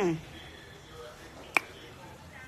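A single sharp click with a short bright ring, about one and a half seconds in.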